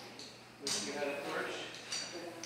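Indistinct speech that the recogniser could not make out. It starts after a short lull about two-thirds of a second in.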